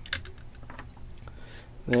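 Light, irregular clicks and taps of hard plastic: a diorama brick block being worked onto the arm of a clear plastic display stand until it fits.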